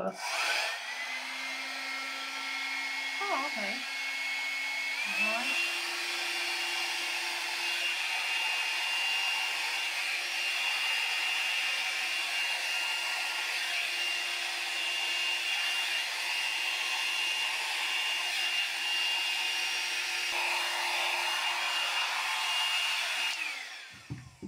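A small handheld hair dryer, started on its low setting, runs with a steady whine and rush of air. The whine spins up as it starts and steps up to a higher pitch about five seconds in. It winds down as the dryer is switched off near the end.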